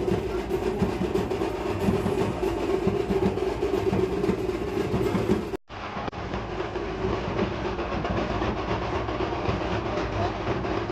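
Dhol-tasha drumming: dense, rhythmic beating of dhol and tasha drums played together. The sound breaks off for a moment a little over halfway through and then carries on.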